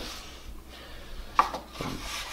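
Gloved fingertips rubbing thin CA glue into a small wooden butter knife on a plywood board: a faint, soft rubbing, with one sharp tap a little after halfway.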